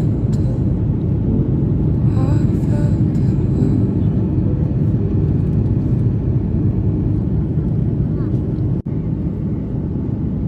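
Steady low rumble of jet airliner cabin noise in flight, the engines and airflow heard through the cabin, with faint voices briefly about two seconds in. The sound drops out for a moment near the end.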